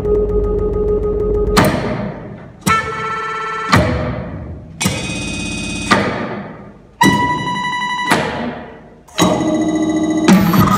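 Contemporary live music for percussion, baritone saxophone and electronics: a series of sudden loud attacks about once a second. Each attack either sustains a bright held tone that stops abruptly or dies away into a fading ring.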